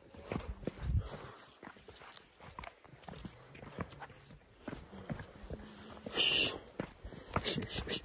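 A hiker's footsteps on a dry grassy trail, with irregular small clicks and rustles of clothing and gear, and a short breathy hiss about six seconds in.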